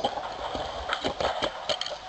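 Irregular knocks and clicks over the low rumble of street traffic, with a red double-decker bus close by.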